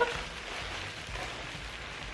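Plastic mailing and poly bags crinkling and rustling as they are handled, a steady rustle.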